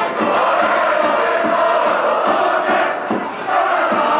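A school cheering section chanting in unison over a brass band playing held notes, with a steady beat underneath. The band moves to a higher note about three and a half seconds in.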